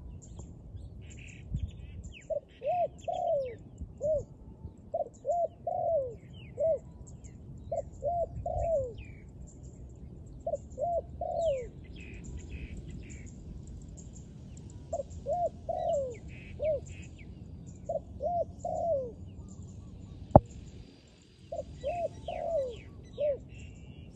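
Spotted dove cooing: about seven phrases of three or four low notes, each phrase ending in a longer falling coo. Other small birds chirp faintly in between, and there is a single sharp click about twenty seconds in.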